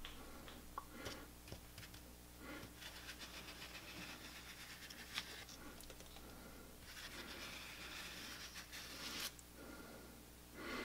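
Faint scraping of a hand scraper smearing wet Smooth-It, a runny plaster paving compound, across the road bed, with a few light taps.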